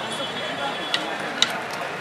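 Street-stall background: a steady noise bed with faint distant chatter, broken by two sharp clicks about half a second apart, a second and a second and a half in.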